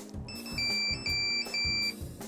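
Monophonic ringtone beeps from an old Nokia mobile phone: three pairs of a short higher beep and a longer, slightly lower beep, over background music.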